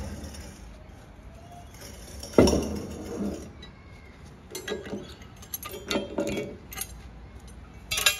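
A heavy concrete pit lid thuds down once, about two and a half seconds in, as it is lowered with a pair of steel lifting keys. A run of sharp metallic clinks and rattles from the steel keys follows, with one more near the end.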